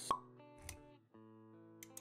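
Intro sound effects over soft held music notes: a sharp pop just after the start, a brief low thud shortly after, then held chords with a few quick clicks near the end.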